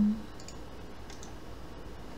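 A few faint computer mouse clicks over a steady low hiss and hum from the microphone.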